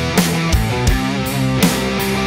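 A heavy rock band mix of distorted electric guitar chords played through a tube amp head and speaker cabinet, over a drum kit whose hits land every half second or so.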